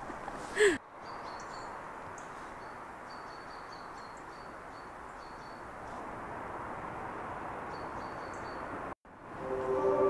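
Steady outdoor background noise on a wooded hillside path, with faint high thin notes that come and go. A short vocal sound comes at the very start, and mallet-percussion music fades in just before the end.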